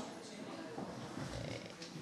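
A pause in speech: quiet room noise in a lecture hall, with a few faint clicks and a soft low thump a little after halfway.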